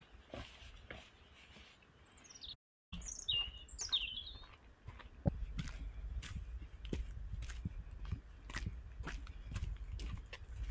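A few short, falling bird chirps between about two and four seconds in, then footsteps on a dirt trail, irregular crunches and taps over a low rumble. The sound drops out completely for a moment just before the chirps.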